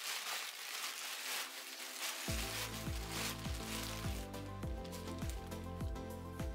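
Plastic bag crinkling as a block of clay is handled inside it, then background music with a steady low beat comes in about two seconds in and runs over the rustling.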